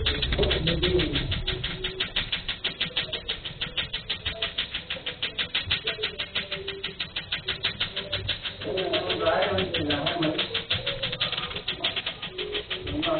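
Tattoo-removal laser firing a rapid, even train of sharp clicks as it pulses over the skin.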